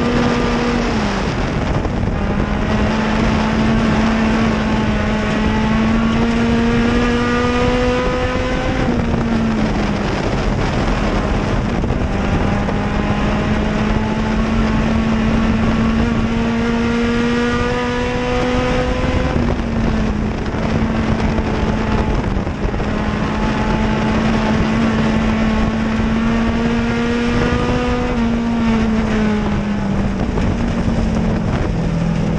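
Dirt-track race car engine heard from inside the car at racing speed. Its pitch climbs slowly for several seconds, then falls sharply as the driver lifts, three times, over a steady rush of wind and road noise.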